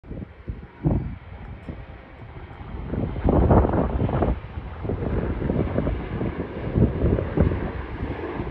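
Wind buffeting the phone's microphone in uneven gusts, over a steady jet noise from a Bombardier Global 5000's twin turbofans climbing out after takeoff. The jet noise grows louder from about three seconds in.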